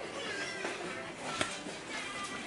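A dog whining in thin, high-pitched cries, eager to be let outside, over soft background music, with a light click about one and a half seconds in.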